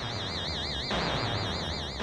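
High electronic warbling tones over a steady hiss, a synthesized sound effect on the film's soundtrack. The lowest of the warbling tones drops out about a second in, while the upper ones carry on.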